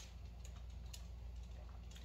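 Faint sipping from a plastic cup of blended iced drink through a straw: a few soft, scattered clicks over a steady low hum.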